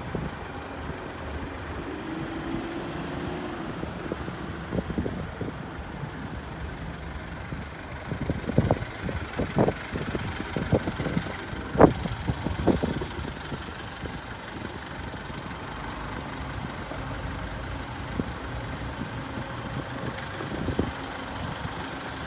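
Mitsubishi Pajero's DI-D diesel engine idling steadily. Between about 8 and 13 seconds in come a run of clicks and knocks as the driver's door is opened and someone climbs into the seat, the sharpest click near the middle.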